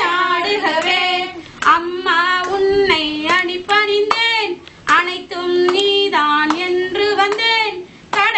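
Women singing a Tamil devotional song to the mother goddess in a held, chant-like melody led from a songbook, with scattered hand claps.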